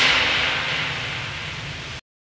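Hissing noise wash over a low hum closing out a synthwave track after the beat has stopped. It fades steadily and cuts off abruptly at the end.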